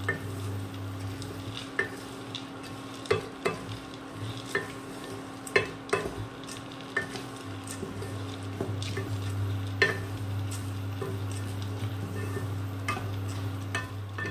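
Wooden spatula stirring mixed seeds and chopped nuts frying in ghee in a nonstick pan, with a light sizzle and irregular clicks and scrapes as the spatula knocks the pan. A steady low hum from the induction cooktop runs underneath.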